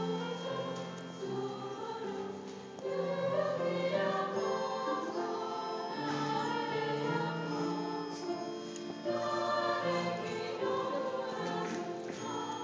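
Women's choir singing a Japanese song in sustained harmony, the held chords changing every second or two.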